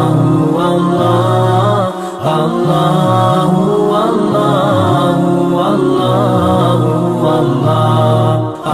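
Devotional vocal chant, a voice repeating "Allah" over and over to a steady looping melody, with a short break about two seconds in.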